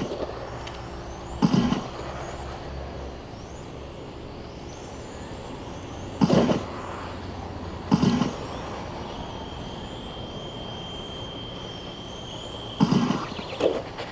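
Electric 1/10-scale radio-control touring cars racing: high-pitched motor whines that rise as the cars accelerate, with short loud whooshes about five times as cars pass close by.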